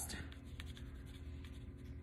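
Pencil scratching lightly on tan paper: a quick run of short, faint sketching strokes.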